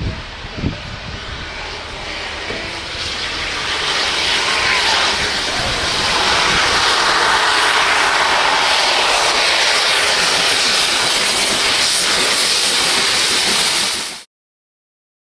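Steam locomotive 70013 Oliver Cromwell, a BR Standard Class 7 Britannia Pacific, passing with its train under steam: a rushing mix of exhaust and running noise that grows louder as it approaches and then stays loud as it goes by. Two brief knocks come near the start.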